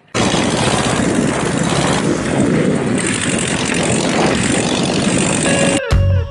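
Loud, steady rush of wind and road noise on a camera held outside a moving VW Kombi, buffeting at the low end. It cuts off abruptly near the end.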